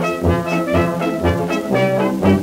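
A 1926 dance-band fox trot playing from a Cameo 78 rpm shellac record. The band plays an instrumental passage over a steady beat.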